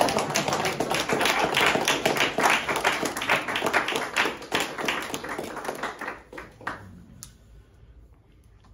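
Audience applauding, the clapping thinning out and dying away about six or seven seconds in, with a last stray clap or two.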